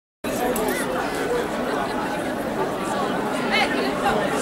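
Crowd chatter: many people talking at once, no single voice standing out, cutting in a fraction of a second in, with one higher voice rising above the babble near the end.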